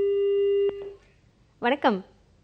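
Telephone busy tone heard over the phone-in line: one steady beep of under a second that cuts off with a click.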